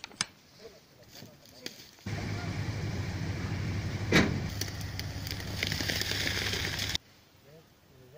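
A pickup truck's engine running steadily close by, with a hiss of noise over it and one loud knock about four seconds in. It cuts in abruptly about two seconds in and stops abruptly about seven seconds in. Before it, faint voices and a few clicks.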